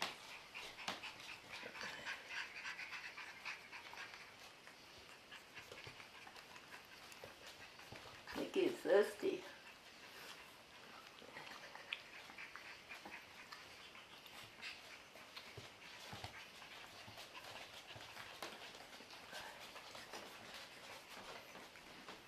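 A young puppy whining, one short wavering cry about eight seconds in, over faint scattered ticks and scuffs.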